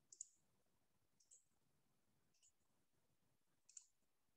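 Near silence, broken by four faint, short, high-pitched clicks at roughly even intervals of just over a second.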